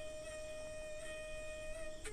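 Background music: one long note from a flute-like wind instrument, held at a steady pitch.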